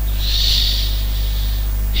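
A soft breath into the microphone, an unpitched hiss lasting about a second. It sits over a steady low electrical hum from the recording setup.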